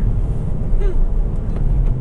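Cabin noise inside a 2015 Ford Focus ST on a wet road: a steady low rumble of its turbocharged 2.0-litre four-cylinder engine and tyres, with an engine tone coming up near the end.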